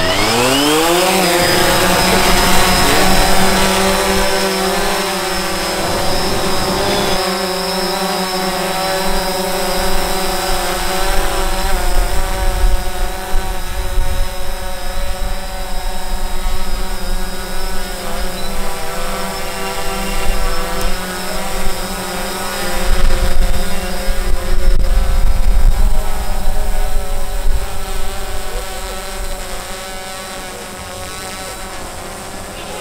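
DJI Phantom 4 Pro quadcopter's four motors spinning up with a rising whine, then a loud, steady propeller buzz as it lifts off and hovers overhead, its pitch wavering as it manoeuvres. Bursts of low rumble come and go, strongest past the middle.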